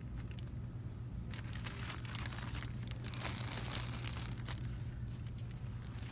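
Plastic-wrapped crepe streamer packs crinkling in irregular bursts as they are handled on their pegboard hooks, starting about a second in and dying away near the end, over a steady low hum.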